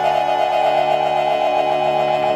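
Piano accordion holding a sustained chord, with a rapidly wavering upper note over steady lower notes.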